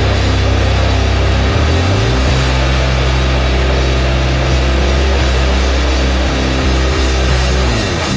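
Raw hardcore punk played loud: distorted guitars and bass holding heavy low chords over drums, the low note shifting about two seconds in, and the band stopping abruptly at the end.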